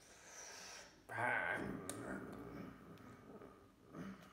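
Wordless vocal sounds and breathing from a man signing: a loud voiced sound about a second in that fades over the next two seconds, with a sharp click partway through.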